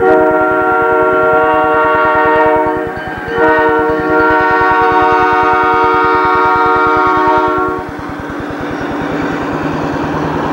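CP Rail diesel locomotive's air horn sounding a chord of several steady tones for the crossing: one blast ending about three seconds in, then a longer blast of about four seconds. After the horn stops, the locomotive's diesel engine rumbles as it rolls through the crossing.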